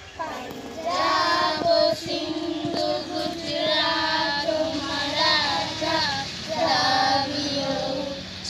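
A group of children singing a song together in unison, with long held notes. The singing comes in just after a brief pause at the start.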